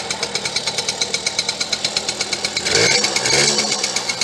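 Small minibike engine idling with a fast, even putter. It is blipped about three seconds in, rising in pitch and getting louder for under a second before settling back to idle.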